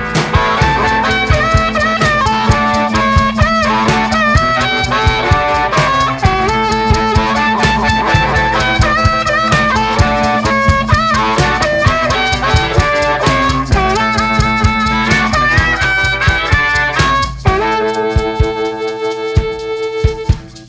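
Live blues-rock band: a wailing amplified harmonica solo with bending notes over driving drums and guitar. Near the end the beat drops away and a long held harmonica chord rings out.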